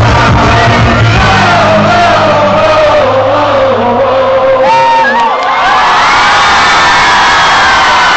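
Live hip-hop concert music recorded on a phone's microphone, loud, with voices singing and shouting over it. The steady bass drops out about halfway through, leaving the voices.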